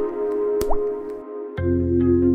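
Two dripping-drop sound effects, each a short plop rising quickly in pitch, one at the start and one just over half a second in, over a sustained ambient music pad; a deep bass drone comes in about one and a half seconds in.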